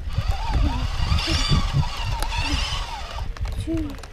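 Wind and ride rumble buffeting the microphone of a camera on a small electric dirt bike moving along a dirt trail. Through the middle, a high-pitched wordless voice rises and falls over it.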